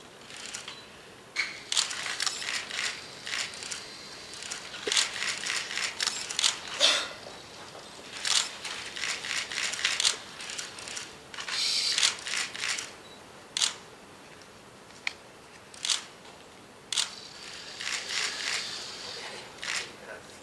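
The joint motors of the HRP-2m Next humanoid robot whirring and buzzing in irregular bursts as it moves its limbs at a very slow speed, with a few sharp clicks in between.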